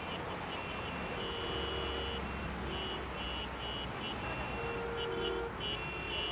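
Street traffic: a low engine rumble with car horns honking on and off in several blasts of different lengths.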